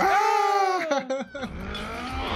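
A drawn-out shouted 'Oh!' lasting about a second, falling slightly in pitch, then a few shorter broken vocal sounds.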